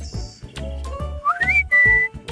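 Gentle children's background music with a whistle that glides upward in pitch about a second and a half in, then holds one high note near the end, the loudest sound here.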